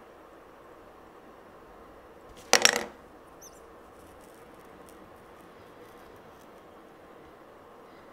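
A metal lighter gives a single sharp clink about two and a half seconds in, ringing briefly, after it has heated a needle. The rest is quiet room tone with a faint tick just after.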